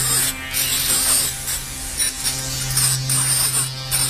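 Beatless passage of an industrial/EBM electronic track: a steady low synth drone under a buzzing, hissing noise texture, with no drum beat.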